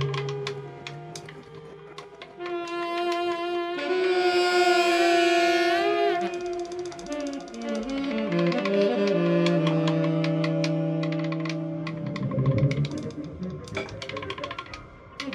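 Free-improvised ensemble music: a saxophone plays held notes that bend in pitch over low sustained tones, with a scatter of sharp percussive clicks throughout.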